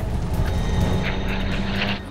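Twin-propeller airliner's engines and rushing air as it tumbles out of control, a dramatized sound effect, with music underneath.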